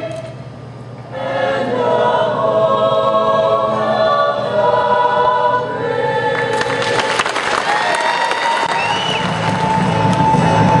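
A small choir singing unaccompanied into a microphone in a large, echoing arena, resuming after a brief pause to finish its last phrase. About six and a half seconds in the crowd breaks into cheering and applause with whistles.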